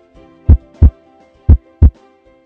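Heartbeat sound effect in a logo jingle: two lub-dub double thumps, about a second apart, over a held musical chord.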